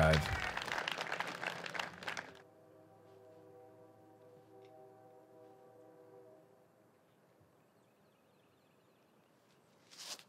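Spectators applauding a drive, fading and cut off about two and a half seconds in. After it a faint steady hum, then near silence.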